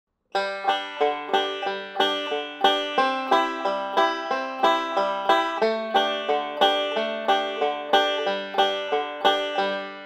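Five-string banjo playing backup with pinch patterns: a single string then a pinch, picked at a steady pace of about three strokes a second. The pitches shift several times as the chords change, and the last chord rings out near the end.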